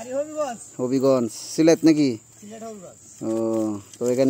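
A man's voice in short phrases over a steady, high-pitched insect drone.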